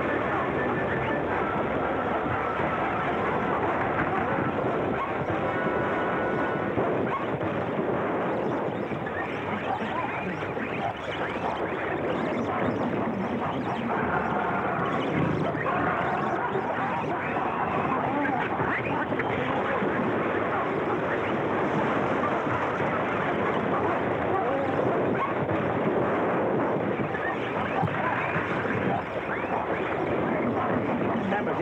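A horde of monkeys chattering and calling all at once, a dense, unbroken din of many overlapping cries.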